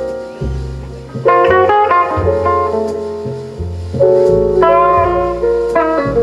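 Live jazz band of electric guitar, double bass, piano and drums playing an instrumental passage, the guitar carrying the melody in phrases of quick notes over sustained bass notes.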